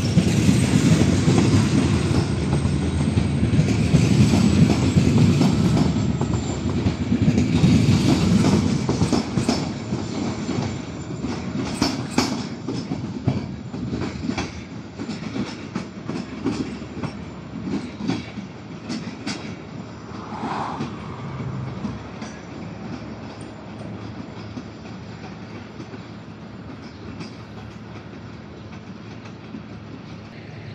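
Passenger coaches of a departing train rolling past on the track, a heavy rumble with wheels clicking over rail joints and points. The sound fades steadily as the train draws away into the distance.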